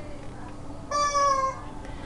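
A single short high-pitched call about a second in. It lasts about half a second and falls slightly in pitch, over faint background hiss.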